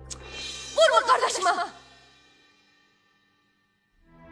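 Background music cuts off, then about a second in a woman lets out a short, loud scream with a strongly wavering pitch, which dies away into silence.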